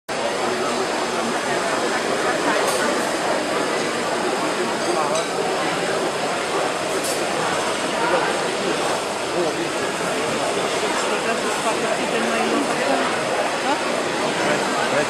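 Steady crowd babble, many people talking at once, over a wood lathe turning a large bowl blank as a gouge cuts into it.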